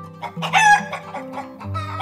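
Two short, loud bird calls, about half a second in and again near the end, over background music with held notes.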